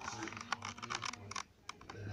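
A quick, irregular run of light clicks and taps.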